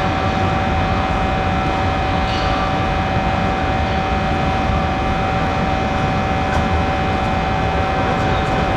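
Loud, steady din of a large hall with a constant mechanical hum at an unchanging pitch running through it.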